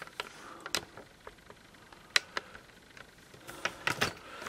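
Faint handling noise: a few scattered, sharp clicks and taps.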